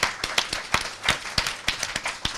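Applause from a small group, the separate hand claps heard distinctly as a quick, uneven patter.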